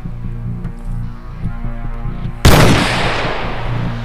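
A single loud gunshot from a hunter's firearm about two and a half seconds in, fading away over about a second, over background music with a steady beat.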